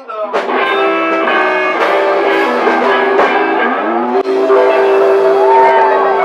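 Live blues band playing: blues harmonica over electric guitars, the harp sliding up about four seconds in into a long held note.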